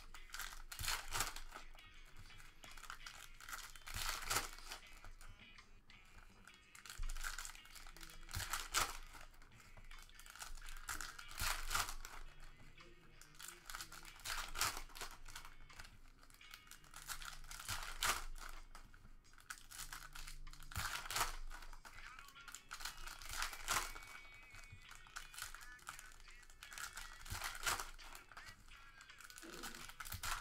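Foil trading-card pack wrappers crinkling and tearing as packs are ripped open and the cards pulled out and handled, in repeated bursts every few seconds.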